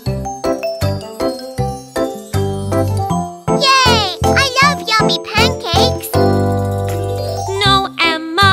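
Children's cartoon background music with tinkling, bell-like notes over a steady beat. Brief high, swooping cartoon vocal sounds come in around the middle and again near the end.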